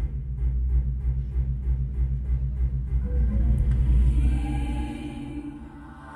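Live concert music: a deep, fast-pulsing bass starts suddenly. About three seconds in, held choir voices come in above it, and the bass stops near the end.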